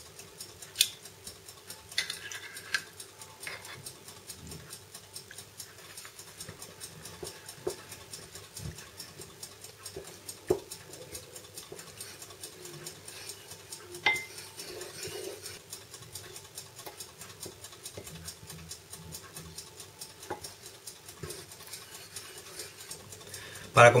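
Wooden spoon quietly stirring blueberry jam into dissolved gelatin in a plastic bowl, with a few light knocks of the spoon against the bowl, over a faint steady hum.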